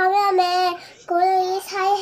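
A young child singing in a high voice: two long phrases of steady held notes, with a short break between them about a second in.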